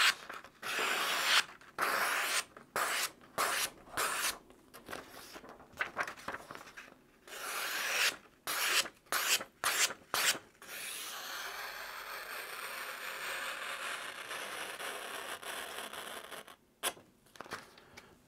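Marttiini Little Classic's stainless steel blade slicing through a sheet of paper, a run of quick separate cuts, each a short rasp. After about ten seconds comes a longer, steadier stretch of paper noise, with a couple more cuts near the end. This is a sharpness test of an edge that came super sharp out of the box.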